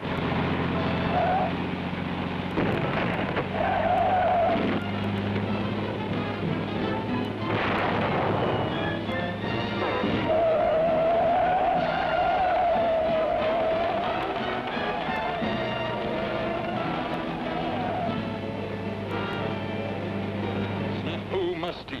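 Cartoon soundtrack: orchestral music over a steady low motor-like drone, broken by a few noisy blasts, the broadest about eight seconds in. A long wavering high tone holds from about ten to about eighteen seconds in.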